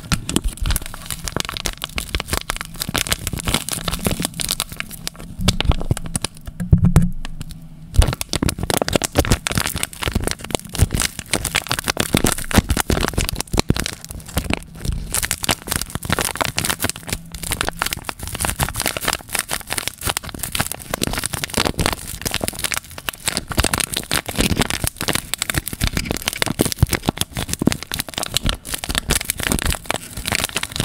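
Foil sachet crinkling and crackling continuously as hands squeeze and shake it over a cup of cereal, with a brief quieter moment about seven seconds in.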